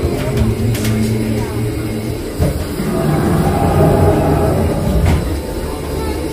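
Spaceship Earth's Omnimover ride vehicle rumbling steadily along its track, under the ride's soundtrack of sustained low tones.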